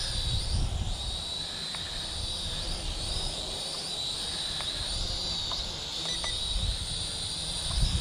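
ScharkSpark SS40 toy quadcopter hovering a few metres off: a steady high-pitched whine from its small motors and propellers, wavering slightly as it holds position. Under it, a low rumble of wind on the microphone.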